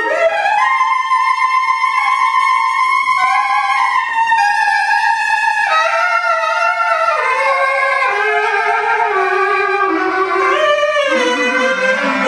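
Saxophone playing a jazz melody: long held notes that step from pitch to pitch, with some notes sliding up or down.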